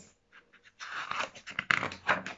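Picture-book pages being turned and handled: a run of paper rustles and crinkles starting about a second in.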